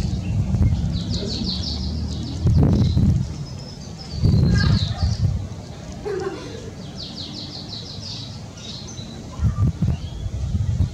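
A bird singing a fast trill of repeated high chirps, twice, with a few scattered chirps between. Low rumbling surges, the loudest sounds here, come in three times.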